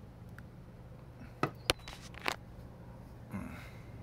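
A bearing's rubber seal being pressed back into place by hand, snapping in with three sharp clicks within about a second in the middle, the second the loudest. A steady low hum runs underneath.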